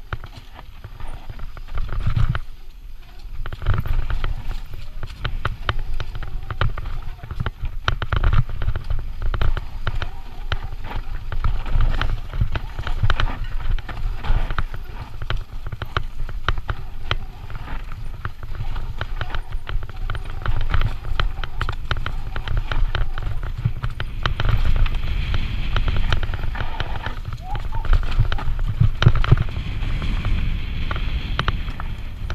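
Santa Cruz Nomad full-suspension mountain bike descending a rough dirt singletrack: tyres rolling over dirt and loose stones, with constant irregular rattling and clicking from the bike over a steady low rumble of wind on the microphone.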